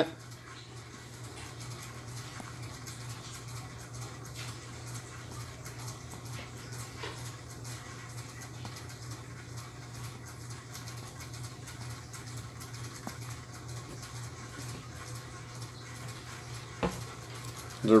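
Quiet room tone: a steady low hum under faint background noise, with a faint click near the end.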